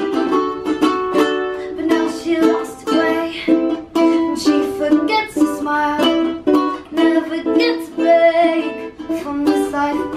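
Two ukuleles strummed together, playing a steady run of chords, with a girl's voice singing over them at times.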